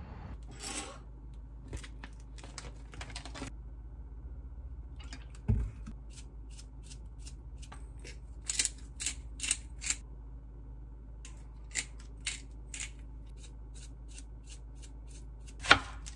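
Kitchen food-prep sounds: scattered sharp clicks and taps as a small seasoning bottle is worked over a tray of salmon, some in quick groups of three or four. A loud knock of a knife on the cutting board comes near the end.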